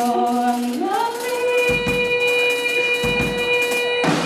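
A woman singing one long held note over a live band, sliding up about an octave about a second in and holding the higher pitch, with a few drum hits beneath.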